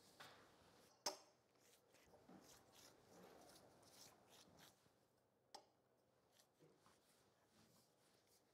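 Near silence, with faint rustling of thin phyllo pastry sheets being turned over and laid flat on a wooden board, and a soft tap about a second in.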